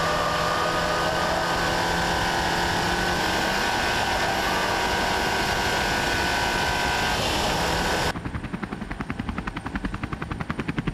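SEAT Leon CUPRA 280's turbocharged 2.0-litre four-cylinder engine held at steady high revs at full speed, with tyre and wind noise. About eight seconds in it cuts suddenly to the fast, even chop of a helicopter's rotor.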